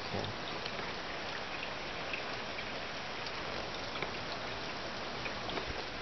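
Steady rain falling outside, a continuous even hiss with faint scattered drop sounds.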